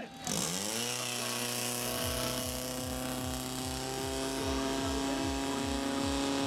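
Portable fire pump's engine running at high revs as it drives water into the attack hoses: a steady drone with a low throb that speeds up from about two seconds in. Music cuts off at the very start.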